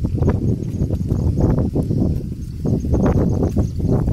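Bullock-drawn seed drill (gorru) working through tilled soil: irregular knocks and scraping from the drill and the bullocks' steps, with a heavy low rumble underneath.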